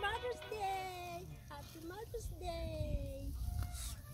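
A faint human voice making drawn-out, wavering sounds that slide in pitch, over a steady low rumble.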